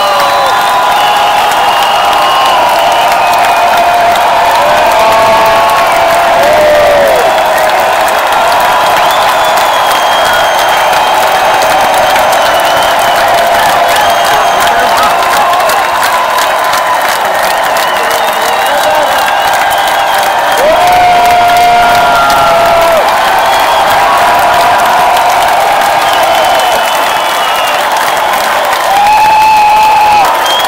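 Large concert crowd cheering and applauding, a steady wash of clapping with many individual screams and shouts rising above it.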